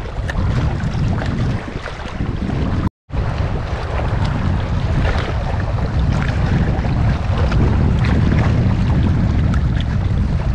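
Wind buffeting the microphone over waves washing against shoreline rocks: a steady rush with a heavy low rumble. The sound cuts out for a moment about three seconds in.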